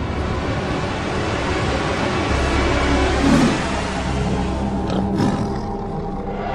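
A tiger roaring, a rough low sound that is loudest a little past the middle.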